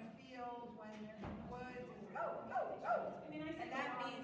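A dog yipping a few times in quick succession a little past halfway, over indistinct talking.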